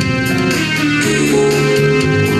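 Live instrumental passage without singing: a guitar strummed over sustained keyboard accompaniment.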